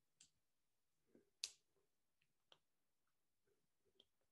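Near silence with a few faint, very short clicks, the clearest about one and a half seconds in.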